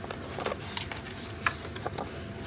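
Tarot cards being handled on a table: a few soft, scattered ticks and taps as cards are picked out of the spread.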